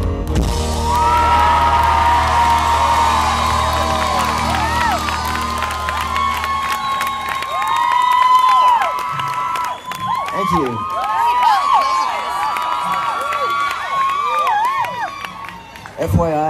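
Concert crowd cheering with many high-pitched screams and whoops that rise and fall, over the band's last low chord ringing on until it cuts off about six and a half seconds in.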